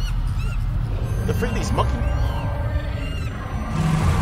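Atmospheric sound effects from a live concert recording: a steady low rumble with short chirping calls scattered above it and a couple of brief rising glides in the middle.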